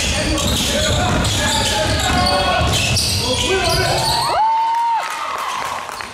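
Sounds of a youth basketball game in a gym: people's voices mixed with a basketball bouncing on the court. A brief, steady high-pitched tone lasts about half a second, about four and a half seconds in.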